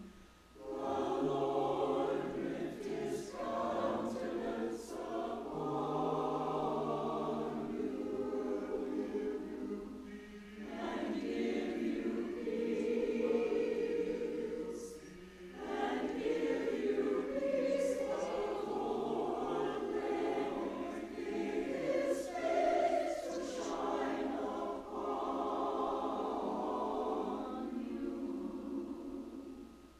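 Mixed church choir singing, its phrases broken by short pauses about ten and fifteen seconds in.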